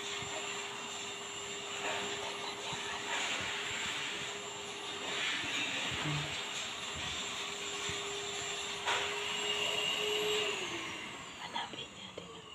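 A steady machine hum with one constant mid-pitched tone, which drops in pitch and dies away near the end as the motor winds down.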